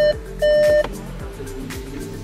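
A phone ringing: electronic beeps at a steady pitch, about 0.7 s apart. Two loud beeps close out the ringing just under a second in, over background music with a steady beat.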